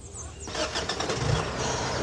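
A car engine starting about a second in, then running steadily.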